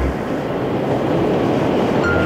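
Chicago 'L' elevated train passing along its steel viaduct, a steady rushing rumble of wheels on track.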